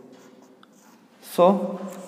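Marker pen writing on a whiteboard: faint scratching and squeaking strokes before a voice comes in about a second and a half in.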